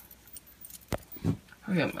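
Thin metal bangle bracelets clinking against each other on both wrists as the hands tie a boat shoe's leather laces, with one sharp click about a second in.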